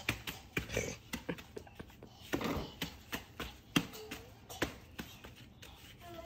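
A toddler playing among plastic toys in a playpen: scattered light taps and knocks of toys being handled and put down, with a short soft vocal sound about four seconds in.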